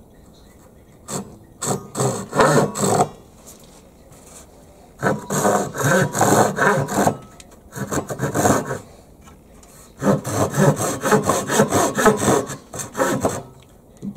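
Harbor Freight 10-inch, 15-teeth-per-inch pull saw cutting across a wooden board with quick back-and-forth strokes. The strokes come in three runs with short pauses between them.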